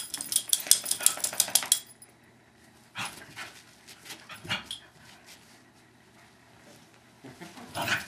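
Two small terriers, a West Highland white terrier and a Westie–schnauzer mix, playing together: a fast run of clicks and jingles for about two seconds, then a few scattered short scuffles.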